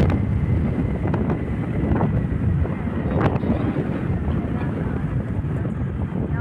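Wind rumbling on the microphone, with road noise from a vehicle travelling along a highway.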